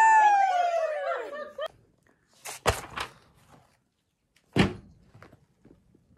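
A woman's long "woo" cheer, falling in pitch and fading out in the first second and a half. A few thumps follow about two and a half seconds in, and one more near five seconds.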